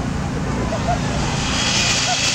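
Steady low rumble and hiss of open-air crowd ambience with scattered voices, the hiss swelling near the end.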